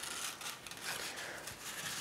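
A sheet of paper rustling and crinkling as it is handled and folded by hand, with small irregular crackles.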